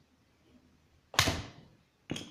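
Plastic pieces of a cheap Rubik's cube snapped together by hand: one sharp click about a second in, dying away quickly.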